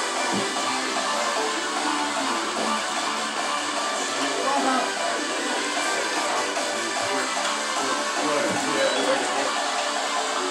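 Music playing steadily, with a singing voice over it.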